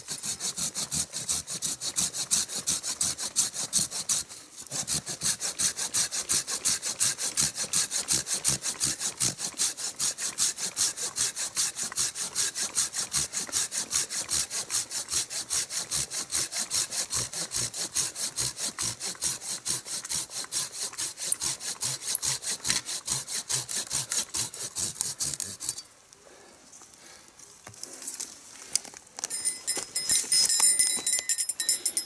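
Silky Gomboy folding pull saw cutting through a branch in fast, steady strokes, about four a second. There is a brief break about four seconds in, and the sawing stops about four seconds before the end.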